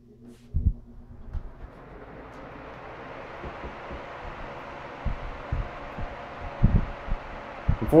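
Mid-1940s Westinghouse Power-Aire 16-inch desk fan switched on: a low motor hum, then the rush of air from the blades builds over the first two seconds or so as it comes up to speed and settles into a steady whoosh. A few low thumps come about half a second in and near the end.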